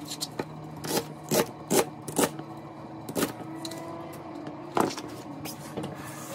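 Chef's knife chopping through cabbage onto a plastic cutting board: about eight sharp, unevenly spaced strikes, over a steady low hum.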